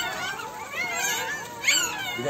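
A litter of newborn puppies whimpering and squealing: many thin, high, wavering cries overlapping, with a louder squeal near the end.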